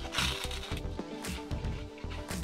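Background music, with crunching as a slice of crispy, freshly air-fried garlic Texas toast is bitten into and chewed: a few short crunches near the start and again around a second in.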